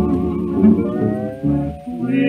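Instrumental fill from a 1934 country string-band recording: plucked guitar over string bass between sung lines, with one note sliding upward about halfway through.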